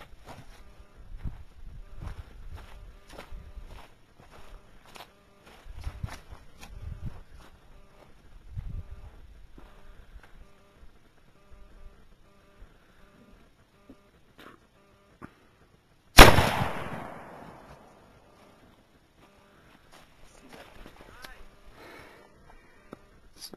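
A single shot from a .243 Thompson/Center rifle: one sharp, very loud crack that rings away over about a second and a half. It is preceded by scattered faint knocks and low rumbles of handling.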